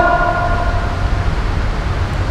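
Steady low rumble and hiss of background noise through the microphone during a pause in speech, with a held steady tone fading out within the first second.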